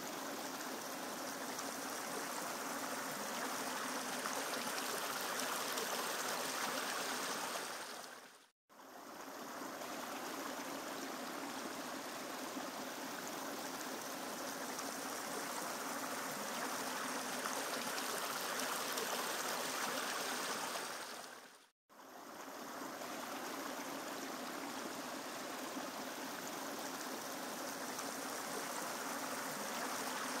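Water of a stream flowing in a steady, even rush. It fades out to silence and back in twice, about 9 seconds and 22 seconds in.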